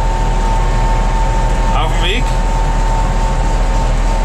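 John Deere 5820 tractor's four-cylinder diesel engine running steadily at road speed, heard from inside the cab as a loud, even drone with a steady high whine over it.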